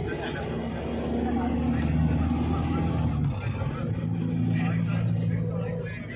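Car engine and road noise heard from inside the moving car: a steady low drone whose pitch shifts a couple of times as the car climbs, with voices talking over it.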